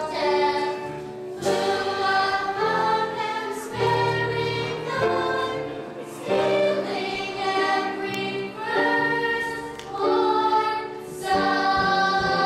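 A choir singing a song in phrases of a second or two, some notes held.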